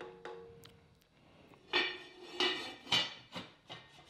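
Heavy enamelled cast-iron lid being set onto a matching Dutch oven. It clinks and rings against the pot's rim four or five times over the last two seconds or so as it is seated.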